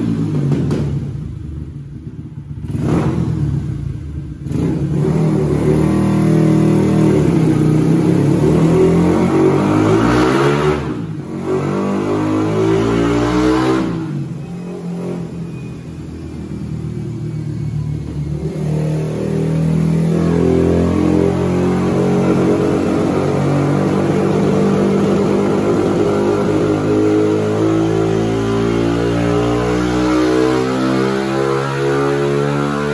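Yamaha LC135 single-cylinder four-stroke motorcycle engine revved on a chassis dyno: a few quick throttle blips, then long full-throttle pulls with the pitch climbing steadily. It falls back twice midway, then climbs again until the end. On these dyno runs the owner says the standard clutch slips at the top end.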